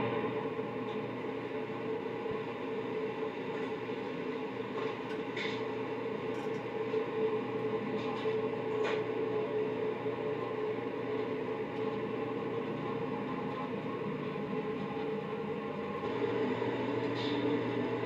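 Steady hum of commercial kitchen machinery and ventilation, with a few faint clicks and clatters; the low hum grows a little louder near the end.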